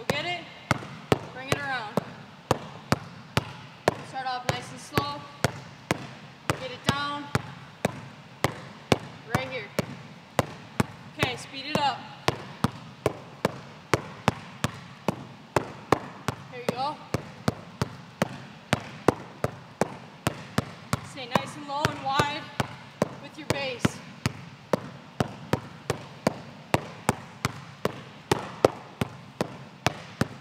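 Basketball dribbled hard on an indoor gym floor, passed from hand to hand around the legs in a figure-eight drill. The bounces come in a steady rhythm of about two a second.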